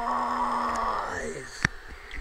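A man's sung note, held steady, then sliding down in pitch and fading out about a second and a half in, followed by a single sharp click.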